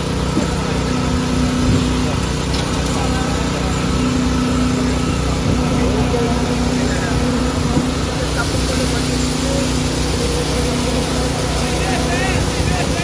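Hydraulic excavator's diesel engine running steadily close by, holding an even speed without revving.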